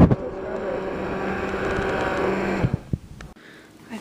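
Cuisinart hand-held immersion blender running in a cup of smoothie mix, a steady motor hum with the blade churning the liquid. There is a sharp knock at the start, and the blender switches off just under three seconds in, with a click.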